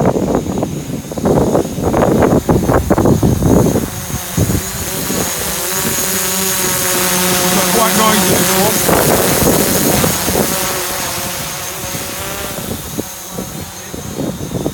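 Wind buffeting the microphone in rough gusts for the first few seconds. Then a DJI Mavic Pro quadcopter's propellers whine as it flies close by, the pitch drifting up and down with the motor speed before easing off near the end.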